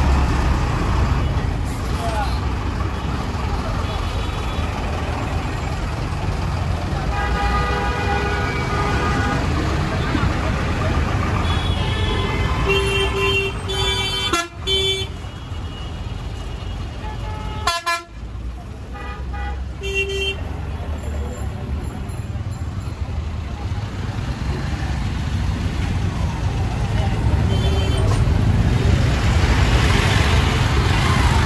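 Street traffic: buses and auto-rickshaws running with a steady engine rumble, and vehicle horns honking several times, one long blast early on and a cluster of shorter toots in the middle.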